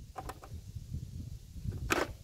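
Bosch Tassimo pod machine's lid being closed over a loaded T-disc, with light handling clicks early on and a single sharp click as the lid latches shut near the end.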